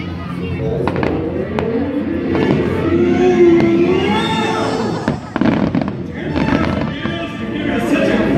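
Fireworks bursting in a string of sharp bangs over the show's soundtrack of orchestral music and singing from loudspeakers.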